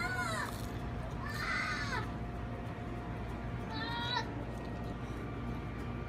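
A woman's high-pitched, delighted 'mmm' sounds while eating, three short squeals that rise and fall, near the start, about a second and a half in and about four seconds in.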